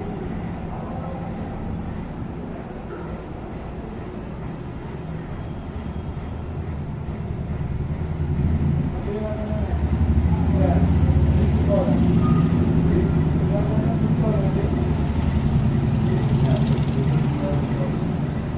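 A vehicle engine running, getting louder about eight seconds in and staying loud until near the end, with faint indistinct voices in the background.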